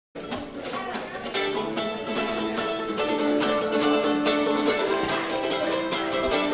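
A small acoustic plucked string instrument played live: a run of quick picked notes and strums that begins right as the sound comes in and carries on steadily.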